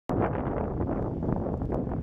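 Wind buffeting the camera microphone: a steady, rumbling noise heaviest in the low end, fluttering slightly in level.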